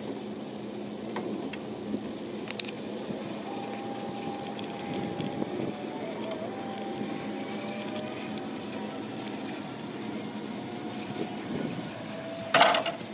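Still RX20-20PL electric forklift's hydraulic lift running as its triplex mast extends: a steady whine comes in a few seconds in, dips briefly midway, and stops shortly before the end, over a steady machine hum.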